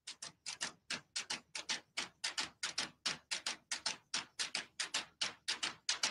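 Ticking clock sound effect on the radio broadcast: fast, even ticks, about four to five a second, often in close tick-tock pairs.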